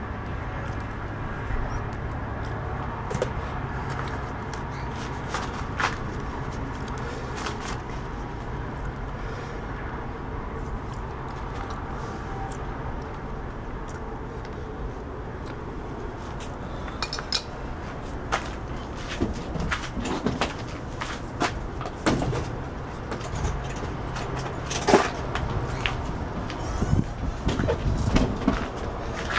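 Scattered light clicks and taps from soldering a wire onto a small overload circuit breaker and handling it over a metal TV chassis, over a steady low background hum; the taps come more often in the last ten seconds.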